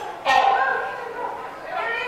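Indistinct voices of people talking in a large indoor hall, with a louder voice starting suddenly about a quarter second in.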